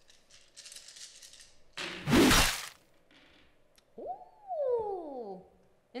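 A handful of plastic six-sided dice rattled in cupped hands, then thrown onto the gaming table in one loud clatter to roll melee hit checks. A couple of seconds later a voice gives a long 'oooh' that falls in pitch.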